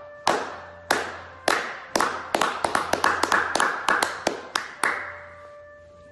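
Hand claps that start slow, about half a second apart, speed up into a quick run, and stop about five seconds in.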